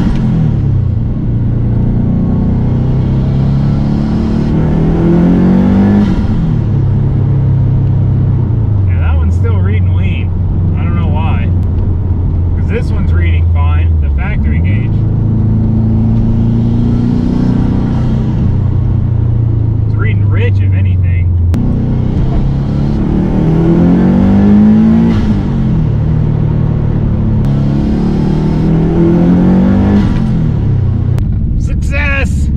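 Turbocharged Subaru WRX flat-four engine heard from inside the car's cabin, pulling up through the gears several times. Its pitch rises on each pull and drops at the shift, with steadier cruising in the middle. With the exhaust leak repaired it is running well.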